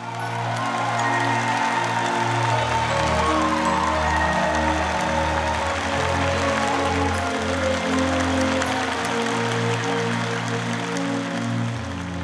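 Live band playing the instrumental introduction to a Vietnamese nhạc vàng duet, with an audience applauding over the music.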